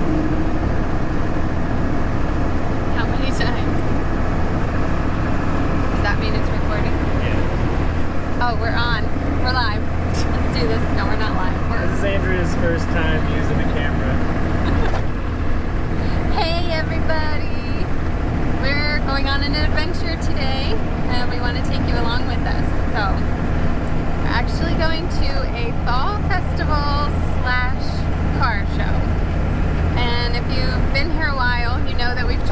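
Steady drone of a Cummins diesel engine and road noise inside the cab of a square-body GMC truck cruising at highway speed, with voices over it from about eight seconds in.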